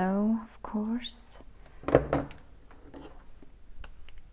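A woman's brief wordless vocalising: a held hum at the start, then a short sound sliding upward. A single sharp knock comes about two seconds in, and a small click near the end.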